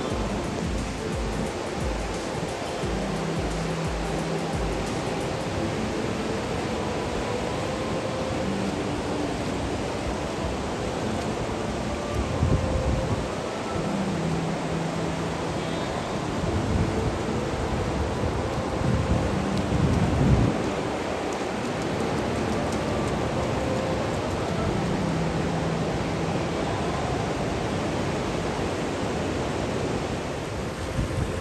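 Ocean surf breaking on a sandy beach, a steady wash of noise with louder surges about twelve and twenty seconds in. Faint background music with soft held notes plays over it.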